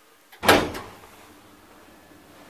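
A single loud clunk from an old 1975 Valmet-Schlieren traction elevator, just after a floor button is pressed, as its mechanism engages for the trip. A faint click comes just before it, and the clunk rattles briefly as it dies away.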